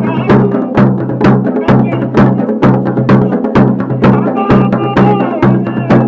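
Dance music for a Garhwali Pandav Nritya: drums struck in a steady beat of about two strokes a second over a sustained low tone.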